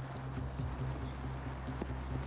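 A steady low hum with a few faint, scattered knocks.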